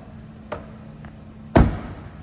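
A light click, then about one and a half seconds in a single solid thud as the C6 Corvette's rear tonneau cover is pushed down and shut behind the folding soft top.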